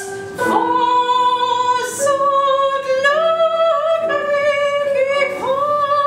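Female operatic voice singing a slow aria in a series of long held notes, accompanied by a digital piano.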